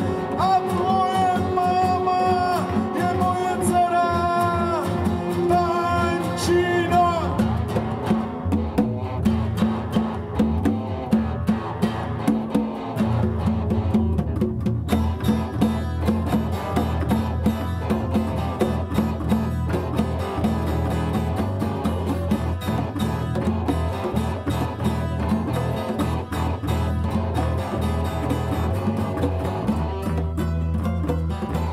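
Live band playing: a hard-strummed acoustic guitar with electric guitars and congas. A sung line holds long notes over roughly the first seven seconds, then the band carries on instrumentally with fast, driving strumming.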